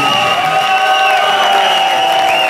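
Live audience cheering and applauding just after a rock song stops, with a couple of long, steady high tones ringing on over the crowd noise.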